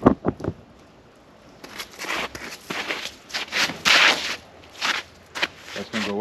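Footsteps crunching in icy snow and slush: a run of irregular, gritty steps through the middle, after a couple of sharp knocks at the start.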